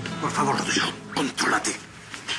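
A man's voice in a few short, breathy bursts during a face-to-face confrontation, over soft background music.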